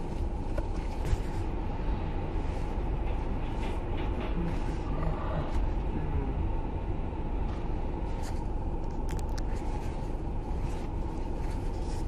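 Steady low rumble of a car's engine and road noise heard from inside the cabin, with a few faint clicks.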